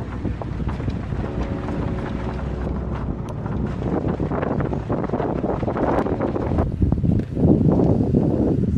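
Wind buffeting the microphone over the rumble of a vehicle driving on a dirt track, growing louder near the end.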